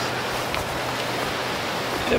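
Steady rushing hiss of wind through tall dry grass and juniper brush.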